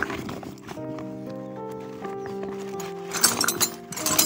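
Background music with long held notes, over metal spanners and tools clinking and rattling in a sack as a hand rummages through them. The clatter comes at the start and again, louder, about three seconds in.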